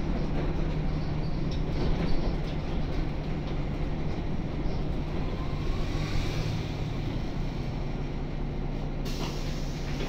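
Interior of a 1998 Jelcz 120M city bus under way: its WSK Mielec SWT 11/300/1 six-cylinder diesel runs with a steady drone, a faint rising whine about halfway through, and a hiss comes in near the end.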